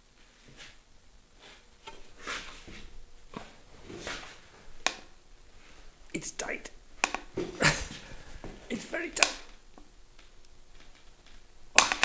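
Irregular sharp clicks and knocks from a long torque wrench's ratchet and socket as a 300Tdi diesel's cylinder-head bolts are turned through 150 degrees, the wrench pulled and reset several times.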